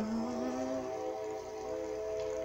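A woman's hummed "mm" on one low note that rises slightly and fades out about a second in, over a steady held chord from the song's instrumental backing track.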